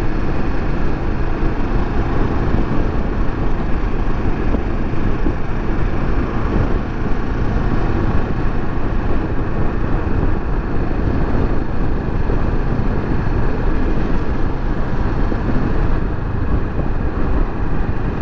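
A Kawasaki Versys 650's parallel-twin engine running at a steady cruise, mixed with wind rushing over the camera's microphone and tyre noise on the road. The sound holds even, with no revving or gear changes.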